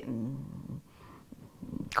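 A woman's low hum of hesitation with her mouth closed, fading out within the first half second, followed by a brief lull and an intake of breath just before she speaks again.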